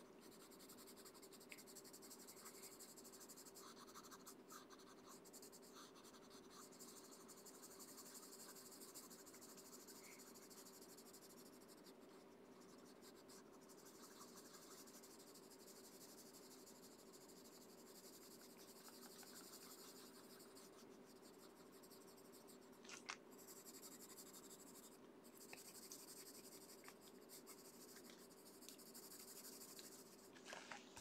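Faint scratching of a wax-based colored pencil (Prismacolor Premier) shading on paper, in short repeated strokes with brief pauses.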